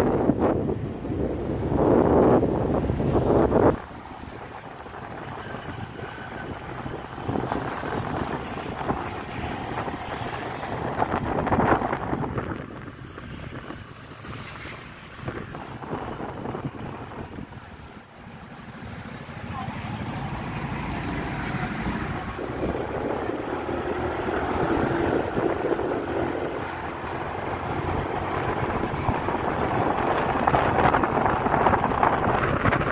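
Wind buffeting the microphone on a moving motorbike, over engine and street-traffic noise. The wind drops suddenly about four seconds in as the bike slows to a stop at a light, then builds again over the last several seconds as it rides off.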